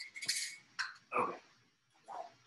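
A few short bursts of splashing and clinking as a glass jar filled with hot water is handled at a kitchen sink, starting abruptly, the loudest in the first half-second.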